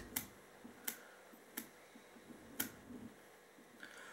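About five faint, sharp clicks, spread irregularly about a second apart, from hands handling a fly-tying vise and tools.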